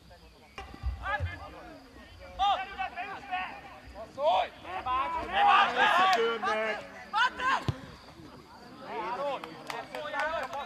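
Several voices shouting and calling out across an outdoor football pitch during play, in short bursts that overlap and rise and fall. A single sharp thud comes about three quarters of the way through.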